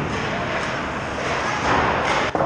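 Ice rink sound during hockey practice: many skates scraping and carving on the ice as a steady rush of noise, with distant voices of players and coaches.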